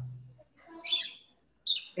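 Two short, high chirps, bird-like, one about a second in and one near the end.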